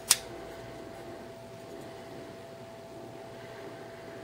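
A Real Steel S6 frame-lock folding knife gives one sharp click about a tenth of a second in as its blade is folded shut. After that there is only a steady room hum with a faint constant tone.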